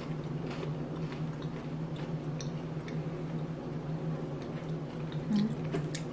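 Two people chewing cookies and cream Pocky biscuit sticks: faint, scattered crisp crunches and clicks over a steady low hum.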